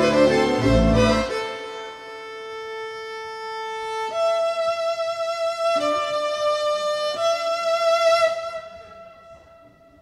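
Violin playing over a bass-heavy accompaniment that stops about a second in. The violin then holds a few long, sustained notes alone and fades away near the end, closing the piece.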